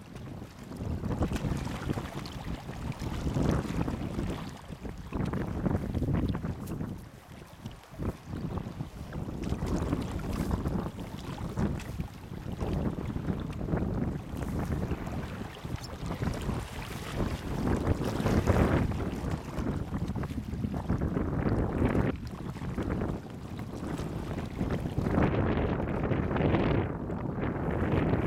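Wind buffeting the camera microphone: a low rushing noise that swells and drops in gusts every few seconds.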